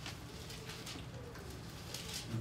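Soft papery rustles of Bible pages being turned and handled at a lectern, a few faint separate rustles, with short faint low tones underneath.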